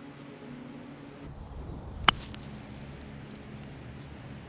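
A golf wedge striking the ball on a chip shot: one sharp click about two seconds in, over a faint steady low hum.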